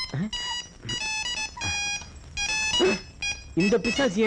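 Several short bursts of high electronic beeping tones, changing pitch from one burst to the next like a ringtone or alarm melody, with brief vocal sounds between them.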